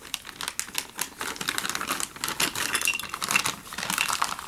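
A clear plastic bag crinkling as a plastic hose and fitting are pushed into it, a rapid, uneven run of small crackles and clicks.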